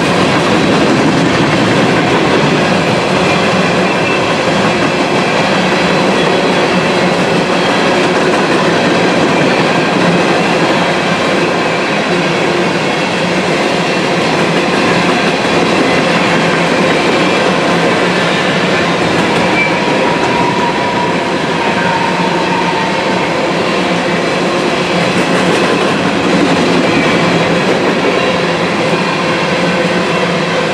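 Freight train of open-top hopper cars rolling past: a steady, loud rumble and rattle of steel wheels on rail, with a faint brief wheel squeal about two-thirds of the way through.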